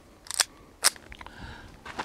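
A CZ 75 PCR pistol being handled: two sharp metallic clicks about half a second apart, then faint rustling.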